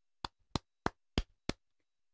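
Five short, sharp taps in a steady row, about three a second, over silence.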